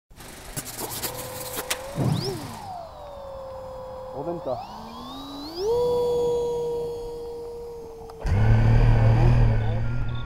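Electric motor and propeller whine of a small RC 3D plane flying overhead, sliding down in pitch as it passes and rising again as the throttle comes up, then holding steady. About eight seconds in, the mini quad's own motors spin up much louder for takeoff.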